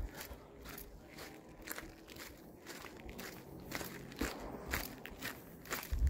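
Footsteps on a sandy dirt trail at a steady walking pace, about two steps a second.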